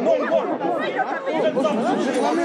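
Speech only: several voices talking over one another in an agitated exchange.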